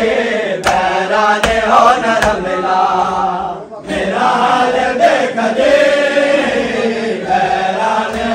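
A group of men chanting a noha, a Muharram lament, in unison, with rhythmic chest-beating (matam) slaps about every 0.8 s. The chant breaks off briefly about three and a half seconds in, then resumes.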